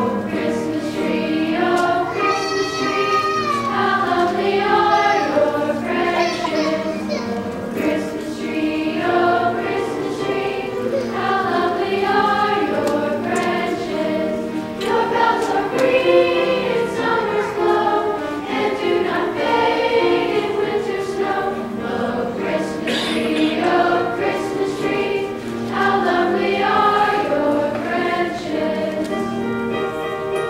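School chorus singing a song in harmony, with held, wavering notes.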